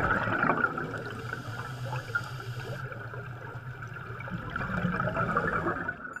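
Underwater bubbling and gurgling: streams of air bubbles rising through water.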